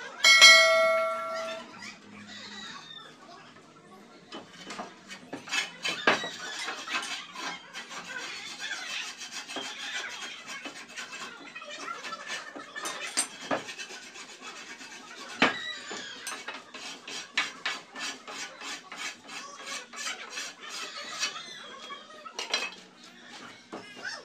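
Metal hand tools at work on masonry and timber: repeated clinks, taps and scrapes, coming quicker in the second half. About half a second in, a short bell-like chime rings for about a second.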